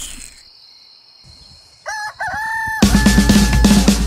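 Rooster crowing once, about two seconds in: two short notes and then a long held one. Music with a heavy bass beat starts loud right after it.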